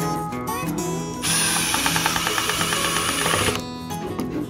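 Milwaukee FUEL cordless impact driver driving a screw through a metal rod bracket into wood. It starts about a second in and runs for about two and a half seconds with a rapid rattling hammer, over acoustic guitar music.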